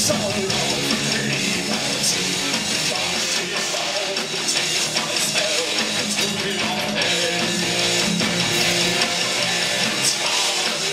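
Heavy metal band playing live, with electric guitars and a drum kit driving a continuous full-band passage, heard from the audience floor of a club.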